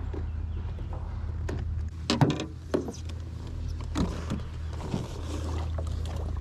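Electric trolling motor running with a steady low hum, broken from about two seconds in by several sharp knocks and clunks as the propeller strikes rocks.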